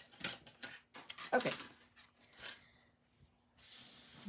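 A series of short clicks and taps from small craft items being handled: a thin metal cutting die is put back into its plastic storage container. Near the end comes a soft rustle of cardstock pieces slid together on the table.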